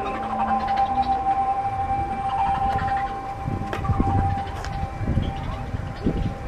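A steady siren-like tone held at one pitch, fading out about five seconds in, over a low background rumble.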